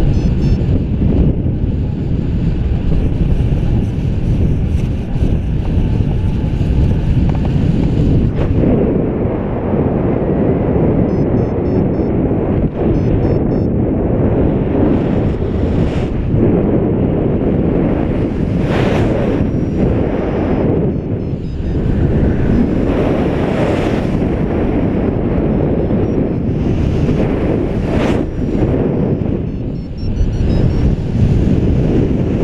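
Airflow buffeting a paraglider pilot's action-camera microphone in flight: loud, steady wind rush, with several stronger gusts in the second half.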